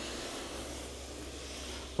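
Hands rubbing along the planed edge of a wooden surfboard rail, a steady soft hiss, with a faint low hum underneath.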